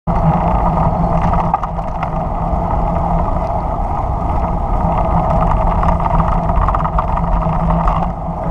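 Steady rushing noise of riding along an asphalt road: wind on the microphone together with tyre noise, unchanging throughout.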